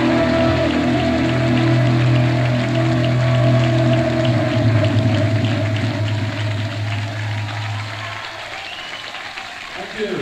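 Audience recording of a live band letting its last chord ring out over audience applause and cheering. The held low notes fade out about eight seconds in, leaving the applause.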